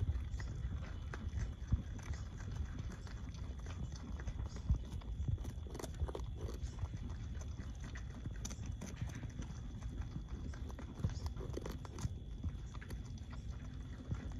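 Two beaver kits gnawing and chewing chunks of sweet potato: a run of small, irregular crunchy clicks from their teeth, over a low steady rumble.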